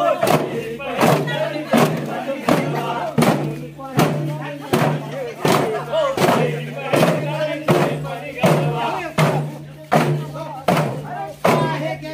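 Double-headed barrel drum beaten by hand in a quick, steady rhythm for a folk dance, with a group of voices singing and shouting over it.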